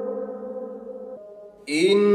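A man reciting the Quran in melodic tajwīd chant. A long held note fades out, there is a brief pause, and a new phrase begins near the end with a hissing consonant.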